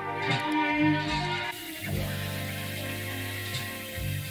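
A producer's beat, with steady bass and melodic parts, played through Guitar Rig 7 Pro effect presets. About a second and a half in, the sound switches to a different, grittier preset and a steady hiss comes in over the music.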